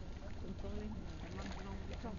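Wind rumbling on the microphone, with faint voices in the background.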